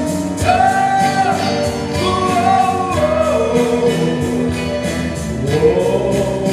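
Live rock band music: electric guitar, bass and drums with keyboard, a lead line of long held notes that bend and glide over a steady beat.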